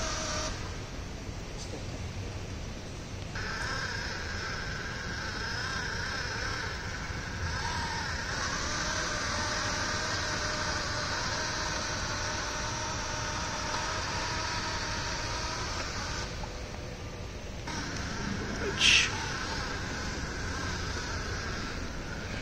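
Small DC gear motors of a model robot boat whining steadily as they drive its trash-collecting conveyor belt and propulsion, with the whine cutting out twice, about a second in and again near the end, and a short sharp click shortly before the end.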